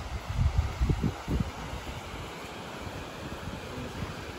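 Wind buffeting the microphone in irregular low gusts for about the first second and a half, then settling into a steady even rush of outdoor wind.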